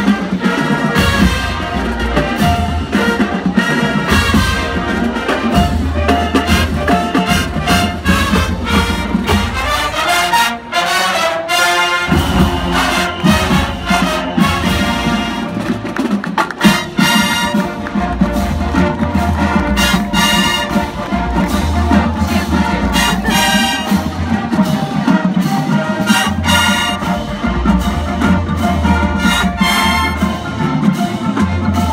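A marching band playing a jazz arrangement: massed brass over drumline and mallet percussion. The low drums drop out for a moment about ten seconds in, then come back in.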